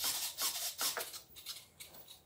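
Micro servos of a small Volantex F-16 RC jet buzzing in short rasping bursts, several a second, as the elevator is worked up and down from the transmitter stick. The bursts die away near the end, leaving a few faint ticks.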